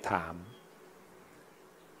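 A man's voice finishing a word, then a pause of near silence with faint room hiss.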